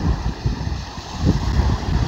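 Wind buffeting the microphone outdoors: an uneven, gusting low rumble.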